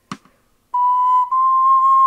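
Yoshitsuka soprano ocarina in F playing a melody alone after a short rest: a brief click just at the start, then a clear held note entering about two-thirds of a second in and stepping up to a slightly higher note a little past halfway.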